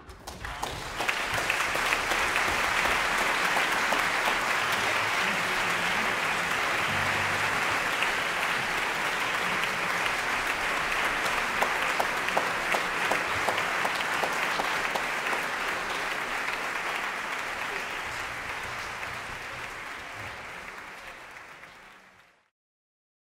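Concert audience applauding: dense, steady clapping that fades away over the last few seconds.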